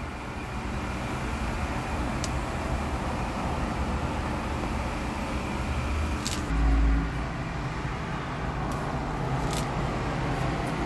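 Steady road traffic noise, a constant low hum with a wash of tyre noise. About six and a half seconds in comes a brief, louder low rumble, with a few faint clicks scattered through.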